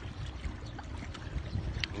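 Small boat under way on a river: a steady low rumble of water and wind noise with no distinct engine tone.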